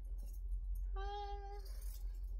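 A woman's voice drawing out the word "one" for under a second, about a second in, over a low steady hum.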